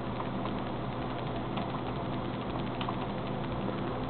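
Steady hum of a running desktop PC and its cooling fans, with a few faint clicks from arrow-key presses as the BIOS selection moves down the list.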